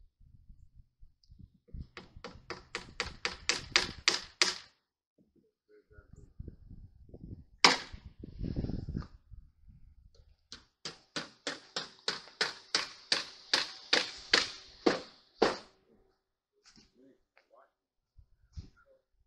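Hammer nailing metal fascia trim: two runs of quick, even blows, about four to five a second, growing louder as each run goes on, with a single louder knock between them.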